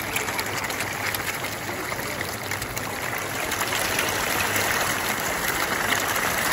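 A dense shoal of ornamental pond fish feeding at the surface, a steady wash of many small splashes and slurps as they jostle for food.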